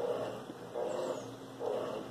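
A dog in the background making three short, faint calls.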